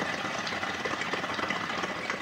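Water bubbling in the bases of two compact Invi Nano hookahs as both smokers draw on their hoses at once: a steady, fast bubbling. The draw is very easy, almost like breathing.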